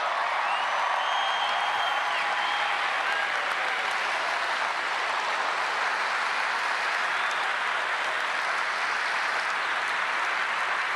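Large ballpark crowd applauding, a steady wash of clapping.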